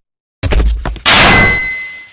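Cartoon hit sound effect: a thud about half a second in, then a loud metallic clang about a second in whose ringing tone fades away over about a second.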